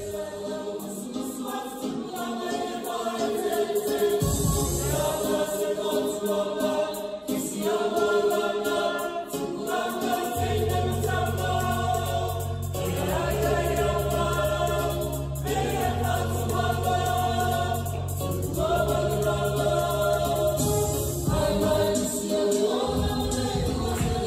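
A Samoan church choir singing together in many voices. Low sustained bass notes join about ten seconds in and drop out about ten seconds later.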